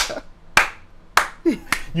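A man clapping his hands while laughing: four sharp claps, about half a second apart.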